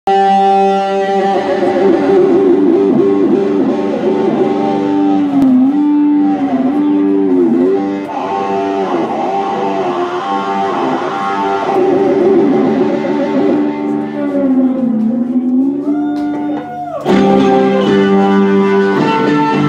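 Live rock band's instrumental intro led by electric guitar: long sustained notes that bend down and back up in pitch several times. About a second before the end the full band comes in louder on a steady chord.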